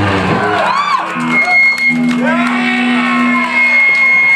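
A live garage-rock song ends about half a second in. The crowd then whoops and shouts over steady ringing tones left hanging from the guitar amplifiers.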